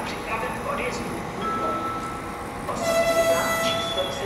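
Horn of a Czech Railways class 814 RegioNova diesel railcar sounding as it approaches: a thin steady high tone first, then a louder held chord of tones lasting about a second near the end.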